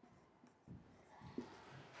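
Faint scratching of a marker pen writing on a whiteboard, a little more audible in the second half.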